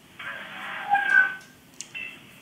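Noise coming over a telephone line, cut off at the top like a phone call, with a brief high tone about a second in.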